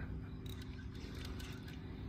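A low steady hum with one brief faint chirp from the fishing reel's drag about half a second in, as a big fish pulls against a hard-bent rod.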